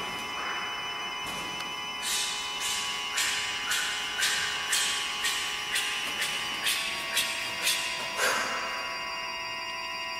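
Church organ holding several steady high tones. Over them, from about two seconds in until near the end, runs a regular series of short hissing strokes, about two a second.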